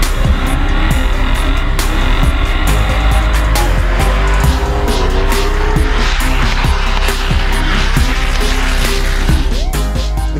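Drift cars running at high revs with tyres squealing as they slide, mixed under loud background music.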